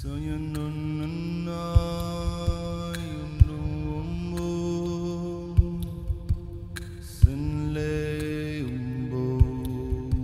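Layered male voices singing long held, chant-like notes in a slow chord that shifts pitch every second or two, with soft low thumps dropping in irregularly underneath.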